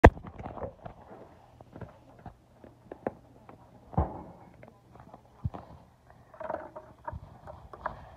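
Handling noise of a phone being moved about: fabric rubbing against the microphone, with scattered knocks and taps, a sharp knock at the very start and another about four seconds in.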